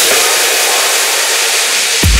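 Techno breakdown in a DJ mix: a loud hissing noise wash with the kick drum and bass filtered out, the low end thinning further toward the end.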